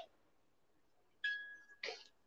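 A music box, touched by accident, plinks briefly. One ringing note sounds about a second in, then a click and another note near the end.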